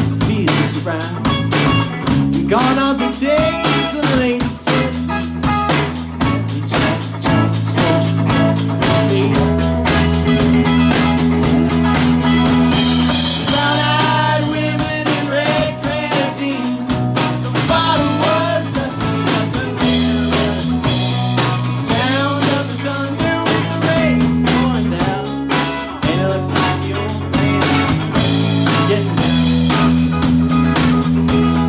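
A live rock band playing with a steady drum-kit beat, electric bass and a Telecaster-style electric guitar. Several voices sing together partway through.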